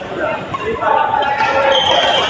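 Sounds of badminton play in a large echoing sports hall: people's voices mixed with a few short, sharp sounds from the court, and a brief squeak-like tone near the end.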